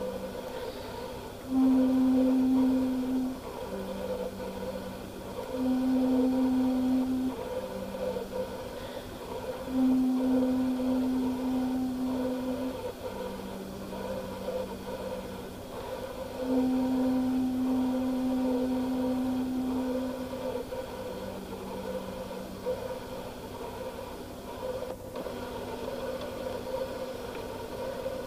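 Solo alto flute playing slow, quiet, long-held notes low in its range, moving back and forth between two pitches about a third apart.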